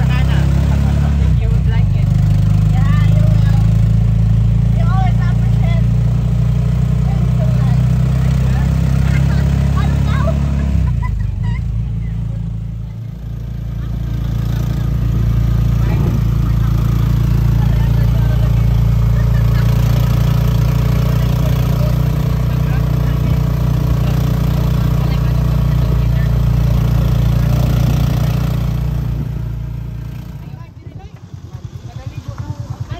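Small passenger vehicle's engine running steadily as it drives along, heard from inside the cabin. Its note drops briefly about a dozen seconds in, then picks up again and runs on.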